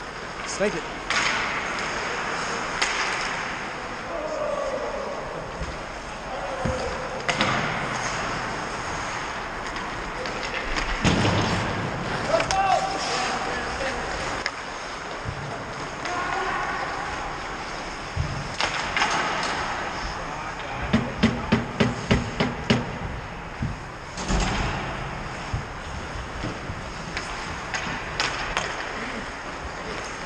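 Ice hockey game sounds: skates scraping on the ice, sticks and puck knocking, and players' indistinct shouts. A quick run of about eight sharp clacks comes a little over two-thirds of the way through.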